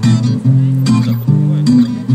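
Acoustic guitar strummed, the chords changing a few times in a short instrumental gap between sung lines.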